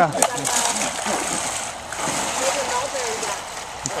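Water splashing in a river, with faint voices in the background.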